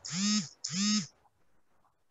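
A person's voice over a video call giving two short voiced syllables in quick succession, like an 'uh-huh' of assent, each about half a second long and rising then falling in pitch.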